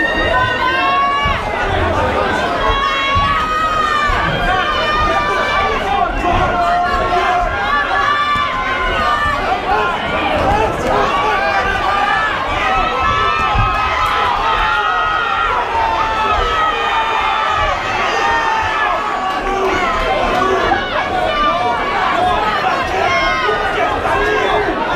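Boxing crowd shouting and cheering during a bout, many voices overlapping without a break.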